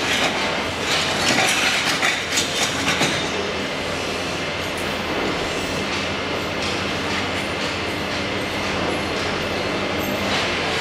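Electric arc welding of door handles. For about the first three seconds it crackles and hisses with many sharp clicks, then it settles into a steady, even hiss over a low electrical hum.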